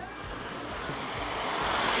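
A van driving past, its engine and tyre noise growing steadily louder as it approaches and passes close by.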